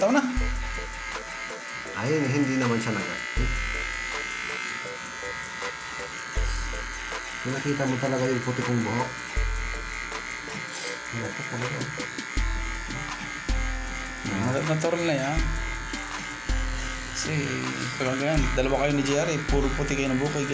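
Electric hair clippers buzzing steadily as they cut hair, under background music with a voice.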